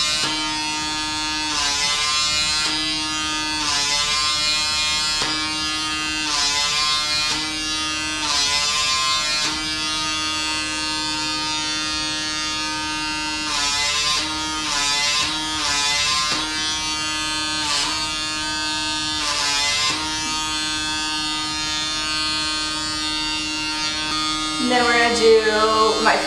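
The small motor and vacuum of a PMD Personal Microdermabrasion wand running with a steady whine. The pitch dips and recovers about once a second as the tip is pressed and glided across the skin of the face.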